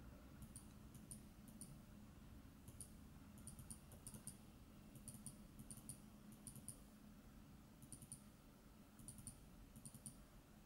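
Faint computer mouse clicks over near-silent room tone: sharp, high clicks in quick clusters of two or three, recurring every half second to a second.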